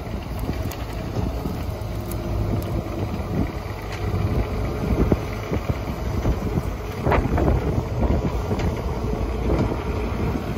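A John Deere 35G compact excavator's diesel engine running steadily under work as the machine pushes dirt back into a trench, with scattered knocks and scrapes from the blade and bucket and a brief louder burst about seven seconds in.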